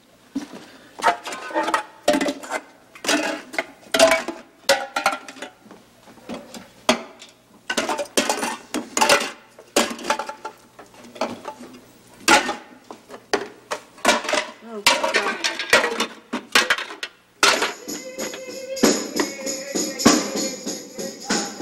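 Irregular clattering and knocking of kitchen objects and a wastebasket being handled and set down. Near the end, music with jingling bells and a tambourine comes in.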